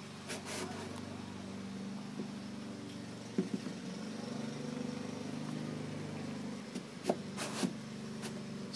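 A steady low hum runs throughout, with a few light knocks and clicks, sharper near the end, as a propellant grain is handled and pushed into a cardboard motor liner tube.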